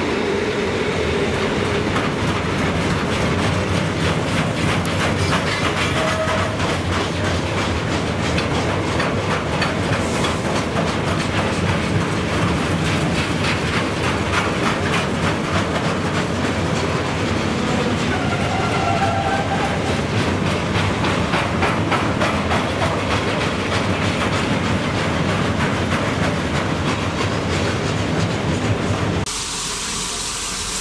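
Freight train of loaded steel-coil wagons rolling past, the wheels clicking in a fast steady clickety-clack over the rail joints, with a brief faint squeal now and then. The sound cuts off suddenly near the end.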